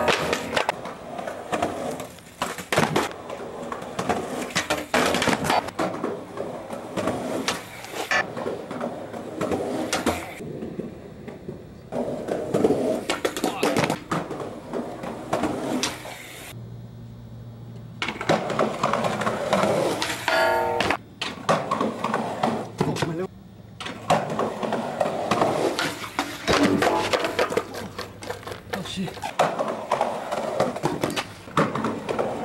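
Skateboard wheels rolling on concrete, broken by repeated sharp knocks of the board popping, hitting a metal handrail and landing on stairs during frontside lipslide attempts.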